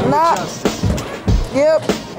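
Hip-hop music with a drum beat and two short swooping pitched sounds, one near the start and one near the end.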